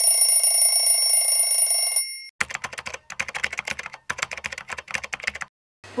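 A ringing sound with several steady high tones lasts about two seconds and cuts off abruptly. It is followed by about three seconds of rapid key clicks, typing on a keyboard, with one short pause in the middle.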